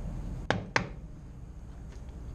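Two short, sharp knocks about a quarter of a second apart, over a faint low steady hum.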